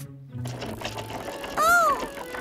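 Cartoon sound effect of a pedal go-kart rattling as it drives off, with light background music. Near the end comes a short voiced "oh?" that rises and falls in pitch.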